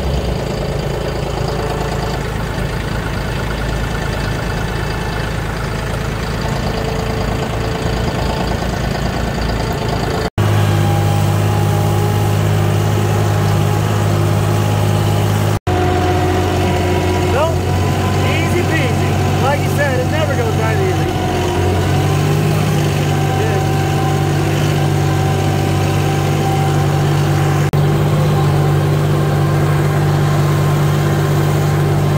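John Deere compact tractor's diesel engine running steadily as it is driven, heard from the driver's seat. Its note changes abruptly twice, about a third and about half way through, and rises slightly about three quarters through.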